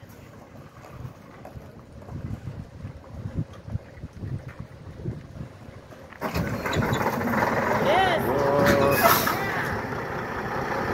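Semi truck being tow-started: a low, uneven rumble as the truck is dragged along, then about six seconds in its diesel engine catches and runs loudly, with a few short gliding whines near the end.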